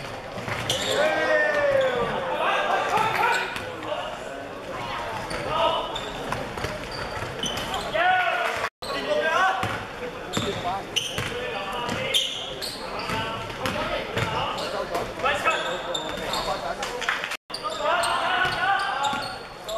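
Indoor basketball game sounds echoing in a large hall: the ball bouncing on the hardwood floor, with players' and onlookers' shouts and voices. Two short gaps of silence break it, about halfway through and just before the end.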